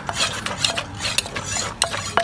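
A wooden pestle and a metal spoon working Lao-style papaya salad with rice noodles in a clay mortar: wet pounding and scraping, broken by several sharp, irregular clinks of the spoon against the mortar.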